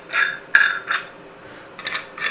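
Metal parts of a black three-light vanity light fixture clinking and rattling as they are handled, with several sharp clinks in the first second and a few more clicks near the end.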